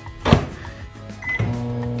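Microwave oven being set going: the door shut with a sharp thunk, a short keypad beep, then a steady hum as the oven starts running.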